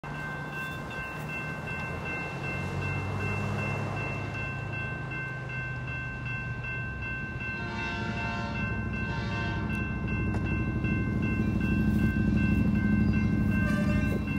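Grade-crossing warning bell ringing steadily while a distant locomotive sounds its NC P3 chime air horn in two blasts a little past halfway. A low diesel rumble grows louder toward the end as the train approaches.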